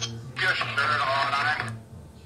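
A thin, tinny voice-like fragment from a phone's speaker, like a spirit-box radio sweep, lasting about a second and starting shortly in.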